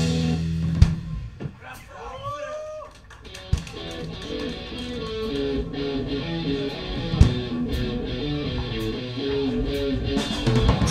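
Live punk band between songs: the band's loud sound cuts off about a second in, and after a short gap an electric guitar starts a repeating picked riff that slowly builds, with a few scattered drum hits.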